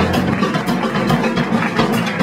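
Drum kit played live in a dense run of quick hits, with a sustained low backing from the band.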